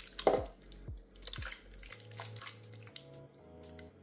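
Canned diced tomatoes plopping and splatting wetly out of a large metal can into a slow cooker, several splats in the first two seconds, the loudest just after the start. Background music with low bass notes runs underneath.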